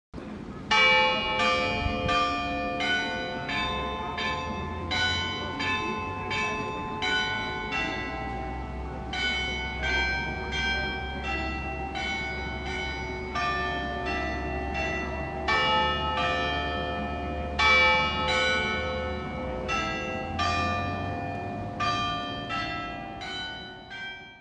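Church bells ringing a run of different notes, struck about twice a second, each stroke ringing on. A low hum runs underneath, and the bells fade out at the end.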